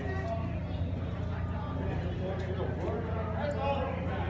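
Indistinct voices talking throughout, over a steady low hum.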